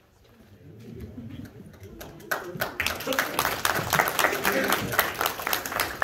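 A congregation applauding after a song, starting about two seconds in as many fast claps, with voices talking under it.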